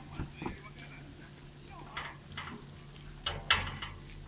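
Steady low hum of chairlift station machinery, with scattered brief voices and two sharp knocks near the end.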